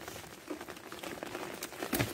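Light rain pattering, with collard leaves rustling close to the microphone as the plants are handled. A sharp click comes just before the end.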